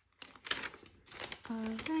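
Clear plastic binder envelope crinkling and rustling as a paper card is slid into it, a quick run of crackles through the first second and a half.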